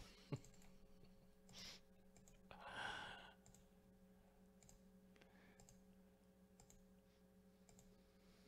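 Near silence with a few faint computer mouse clicks scattered through it, and a breathy exhale about three seconds in.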